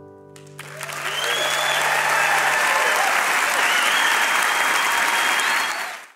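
The last acoustic guitar chord of the song dies away, and about half a second in the audience breaks into loud applause and cheering with scattered whoops. The applause cuts off abruptly near the end.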